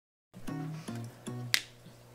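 Quiet background music over a steady low hum, with one sharp snap-like click about one and a half seconds in.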